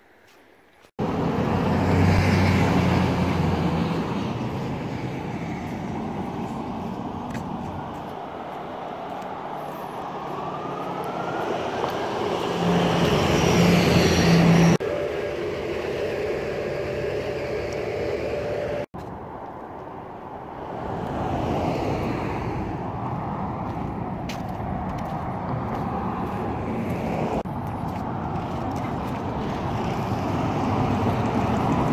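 Outdoor street traffic: cars passing with a steady rushing noise, loudest about two seconds in and again near the middle, with sudden jumps in the sound about a second in and at several later points.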